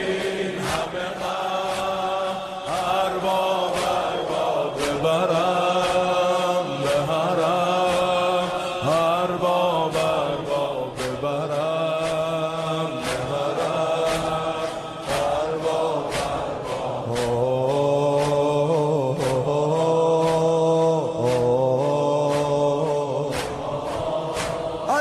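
Male voices chanting a slow Islamic devotional chant (zikr) in unison, holding long drawn-out notes, over a steady beat of sharp strikes.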